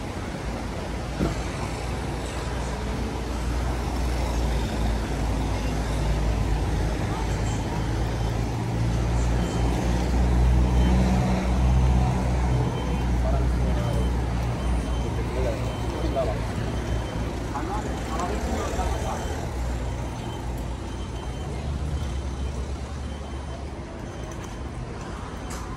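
Street traffic, with a motor vehicle's engine running close by and swelling loudest around the middle, and the indistinct voices of people passing by.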